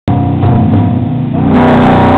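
Rock band playing loud: electric guitar through a small amplifier over a drum kit, starting abruptly, with cymbals coming in about a second and a half in.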